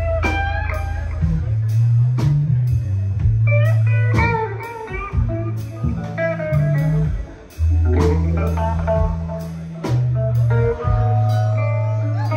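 A live band playing: an electric guitar lead with bending, sliding notes over a low bass line and a drum kit with cymbal hits.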